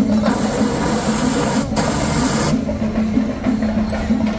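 A loud rushing hiss of air for about two seconds, broken briefly in the middle, as a confetti blower shoots paper confetti into the air. Procession music with percussion continues underneath.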